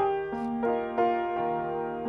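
Grand piano played solo, a slow melody of struck notes over sustained chords, a new note coming about every half second.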